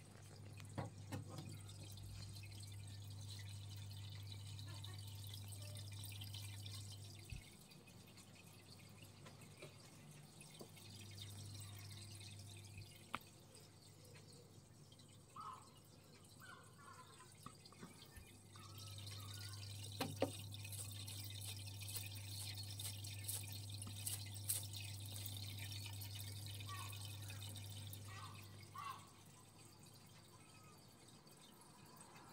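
Faint low hum that stops and starts three times, with scattered light clicks and a few short, high chirps.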